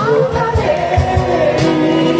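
Live music: a woman singing into a handheld microphone, accompanied by acoustic guitar, with a steady low beat underneath.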